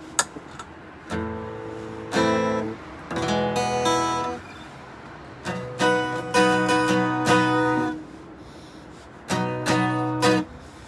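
Acoustic guitar strummed in short bursts of chords with pauses between them, four phrases in all. There is a sharp click just after the start.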